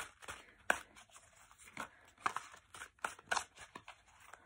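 A Druidcraft Tarot deck being shuffled by hand: a string of irregular soft snaps and clicks as the cards slide and knock against each other.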